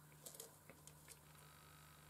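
Near silence: room tone with a low steady hum and a few faint soft ticks in the first second.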